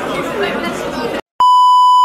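Voices chattering, cut off sharply about a second in; after a moment of silence comes a loud, steady, high test-tone beep, the kind laid under a TV colour-bars glitch transition, lasting most of a second.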